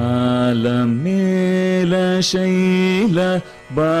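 Male Carnatic vocalist holding long, steady notes in raga Ananda Bhairavi, stepping up in pitch about a second in, with a short break for breath near the end before he sings on.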